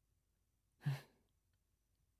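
A man's soft sigh of relief: one short, breathy exhale with a little voice in it, about a second in.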